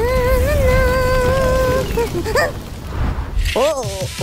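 A cartoon character's wordless voice holds one long, steady cry for nearly two seconds over a low rumble. Short rising and falling vocal exclamations follow near the end.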